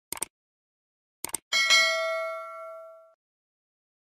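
Subscribe-button sound effect: quick double clicks of a mouse near the start and again about a second later, then a bright notification-bell ding that rings out and fades over about a second and a half.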